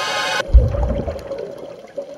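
Soundtrack music: a rising swell cuts off abruptly about half a second in, followed by a deep boom with a watery rush that fades over about a second, under a single held tone.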